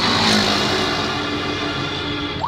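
A sound effect from a radio quiz show playing in a car: a sudden burst of noise with several steady tones held under it, fading over about a second.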